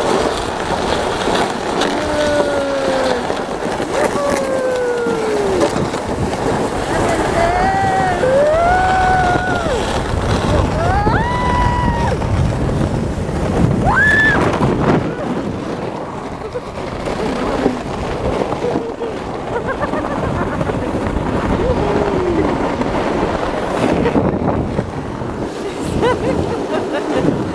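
Steady rushing, scraping noise of a ride down a snow slide run, with several gliding high-pitched whoops and squeals from the riders in the first half.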